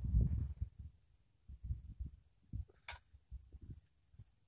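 Close-up thuds and scrapes of hands pulling grass and working loose soil around a seedling while weeding, loudest in the first half-second, with one sharp click about three seconds in.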